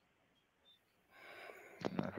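Near silence for about a second, then a faint breathy hiss on a call microphone, like someone drawing breath, and a voice starting right at the end.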